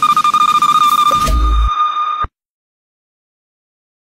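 A girl's voice holding one long, high falsetto note with a fast wavering flutter, over a low bass thump from the backing track. The note cuts off abruptly a little over two seconds in.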